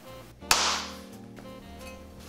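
Mint leaves slapped once between the palms, a single sharp smack: the bartender's 'spank' that bruises the leaves to release their aroma before they go into the cocktail.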